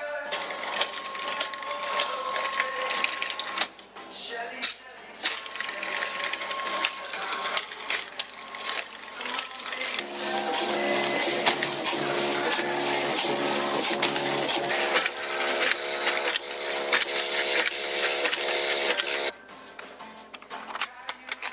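OpenKnit open-source knitting machine running, its carriage and needles clattering with rapid clicks, over background music. The sound cuts off abruptly near the end.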